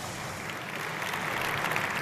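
Audience applauding, a steady patter of many hands that grows a little louder toward the end.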